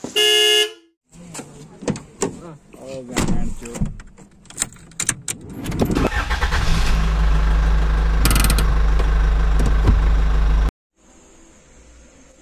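A Renault car's engine is started with the key about six seconds in and settles into a loud, steady idle, heard from inside the cabin, before cutting off abruptly near the end. At the very start there is a short loud horn-like toot, followed by scattered clicks and knocks.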